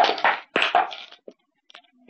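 Dog playing with a handmade fabric plush toy: two bursts of scuffling, mouthing noise in the first second, then a few faint taps.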